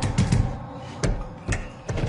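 Hands pounding on glass mirror panels: a quick, uneven run of about five heavy thuds.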